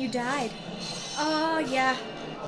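A woman's high voice in two sing-song phrases with swooping pitch, over faint background music.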